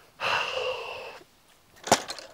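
A long, breathy sigh lasting about a second. Near the end comes one sharp clack: a golf club knocking against the other clubs in the bag.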